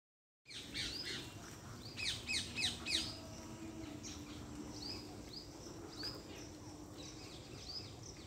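Small birds chirping: a quick run of four loud, falling chirps about two seconds in, then single arched chirps roughly once a second. A faint steady low hum runs underneath.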